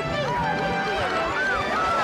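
Several voices shouting and calling out at once over background music, all played backwards so the words are unintelligible.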